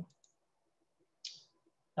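Near silence during a pause in speech, broken about a second in by one short, faint, high-pitched sound.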